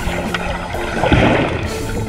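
Background music: a song playing over the footage, with a brief rush of noise about a second in.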